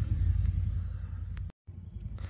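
Low, steady outdoor rumble with no clear source. It fades after about a second and drops out completely for an instant at a cut in the footage.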